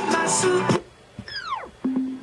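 A pop song with singing and guitar plays through a Beats Pill portable Bluetooth speaker and cuts off abruptly under a second in. A falling electronic tone follows as the speaker is switched off, then a click and a brief low steady tone.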